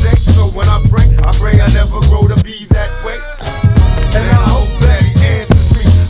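Hip hop track: a bass-heavy drum beat with a rapping voice over it. The beat drops out briefly about halfway through, then comes back in.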